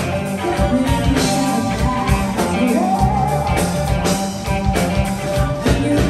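A live rock band plays: electric guitars and a drum kit keep a steady beat under a woman's singing, with one long held, wavering sung note in the middle.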